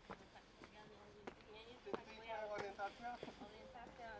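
Footsteps on stone steps, a short knock about every two-thirds of a second, with faint voices of other people talking from about two seconds in.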